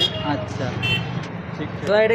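Background voices at a busy street food stall over a steady low hum, with a brief clatter about a second in.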